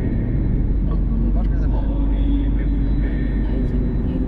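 Steady low road and engine rumble inside a moving Mercedes-Benz car's cabin.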